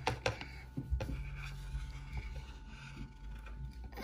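Dry-erase marker tip rubbing over a smooth glazed plate as a small circle is drawn, with a few light knocks in the first second.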